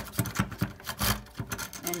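Barbed plastic drain snake being pulled up out of a sink drain, its little hooks clicking and rubbing against the drain in a quick, irregular run of small scrapes.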